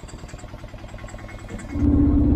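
A small goods vehicle's engine running with an even low pulse. Near the end it becomes much louder, as heard from inside the cab, with a steady hum.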